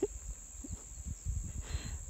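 Outdoor rural ambience: a steady, high-pitched insect drone, with an uneven low rumble of wind on the microphone.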